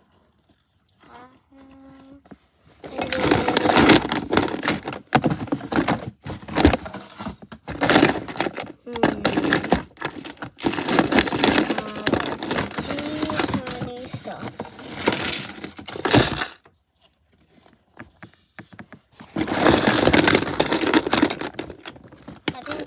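Close rustling and crinkling of a fabric tote bag and plastic as a hand rummages among small toys inside it. There is one long noisy stretch, then a pause and a shorter burst near the end.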